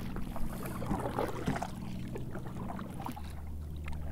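Kayak paddle working the water: soft, irregular splashes and drips as the blades dip and lift.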